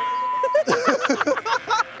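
People laughing and shouting excitedly, after a steady high tone that lasts about half a second.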